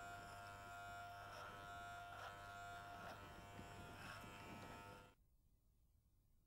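Electric hair clipper running with a faint, steady buzz while cutting hair over a comb at the nape. The buzz cuts off suddenly about five seconds in.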